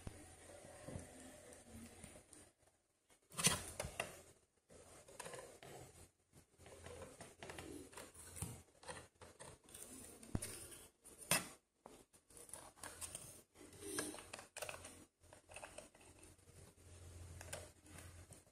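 Faint handling noise of hands working inside a desktop PC case while a SATA cable is pushed into its socket: scattered scrapes and rubbing, with sharper clicks about three and a half seconds in and again about eleven seconds in.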